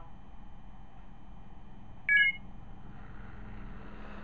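A single short electronic beep, about a quarter-second long, about two seconds in, over faint steady room noise with a low hum.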